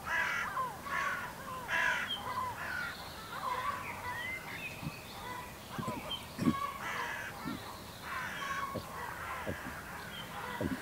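Wild birds calling outdoors: a run of harsh, crow-like caws, roughly one a second, over faint chirping of smaller birds. A few soft knocks come around the middle.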